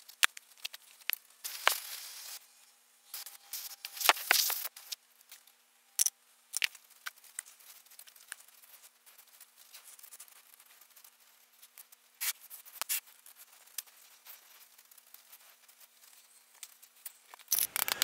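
Molding sand being scraped and brushed off the top and rim of a wooden casting flask by hand, in short gritty scrapes and rubs with quiet gaps between, plus a few light clicks.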